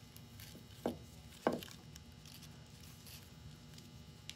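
Hands handling ribbon and greenery sprigs, with faint rustling and two soft thuds about a second in, half a second apart.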